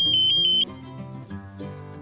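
Electronic buzzer of a homemade Arduino airsoft bomb prop sounding its alarm as the countdown runs out: a high, rapidly pulsing beep that cuts off suddenly less than a second in. Background music plays underneath.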